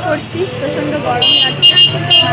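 A high-pitched vehicle horn honking three short toots in quick succession in the second half, over low traffic rumble.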